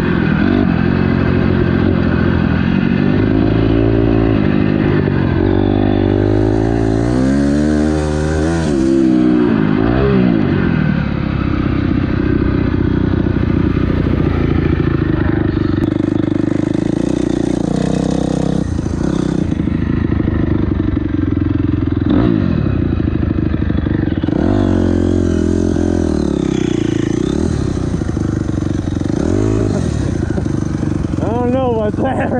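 Dirt bike engine being ridden hard, heard close up from a camera on the bike: the pitch rises and falls over and over with throttle and gear changes.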